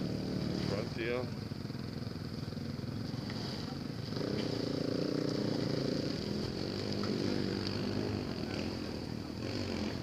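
Pickup truck's engine revving as it strains to pull a loaded trailer through mud. The revs come up about four seconds in and hold for a couple of seconds, then waver. A person's voice is heard briefly near the start.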